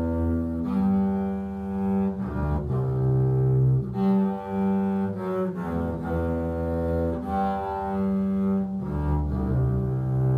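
Bowed string music in a low register: sustained legato notes that change every second or so.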